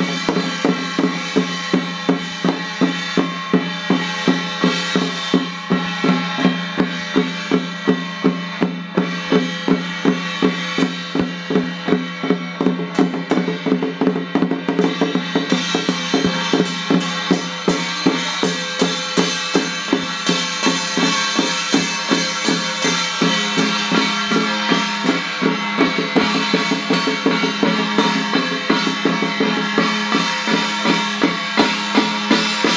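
Ritual music with a drum beating steadily, about two strokes a second, over sustained droning tones.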